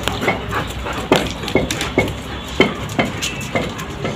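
German Shepherd dogs barking, a quick run of sharp barks at two or three a second.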